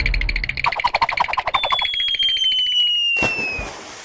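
Electronic cartoon sound effects: a rapid pulsing trill, then a long whistle tone sliding steadily down in pitch, cut off by a short burst of noise about three seconds in.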